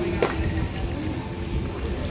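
A single sharp clink about a quarter second in, ringing briefly on a high note, over the steady murmur of a busy pedestrian street.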